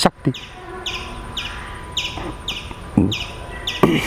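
A bird calling a steady series of short, high, falling chirps, a little over two a second, with a few soft knocks near the start, about three seconds in and near the end.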